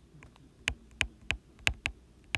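A stylus tapping on a tablet screen while numbers are hand-written, making a quick series of sharp taps, about three a second.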